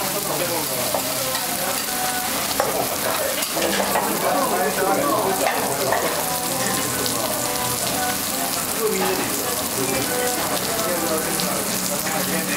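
Okonomiyaki of cabbage and batter frying on a hot steel teppan griddle: a steady sizzle, with indistinct voices in the background.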